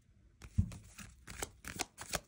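Tarot cards being shuffled by hand: a soft knock about half a second in, then a run of quick papery strokes that come faster and faster.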